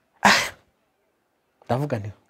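A single short, sharp burst of breath noise from a person about a quarter second in, then a pause, and speech resuming near the end.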